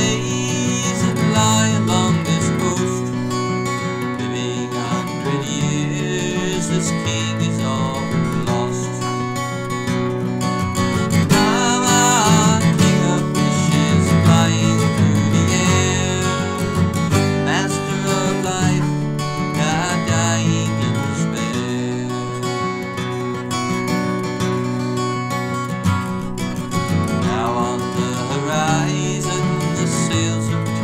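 Acoustic guitar strumming steadily through an instrumental passage of a folk song, with a melody line that bends in pitch a few times over it.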